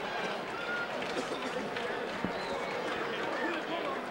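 Boxing-arena crowd noise: many voices shouting and talking at once in a steady din, with no one voice standing out. A single short knock comes about two seconds in.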